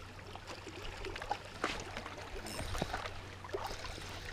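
Small waves lapping faintly against a rocky shoreline, with a few scattered small clicks and knocks.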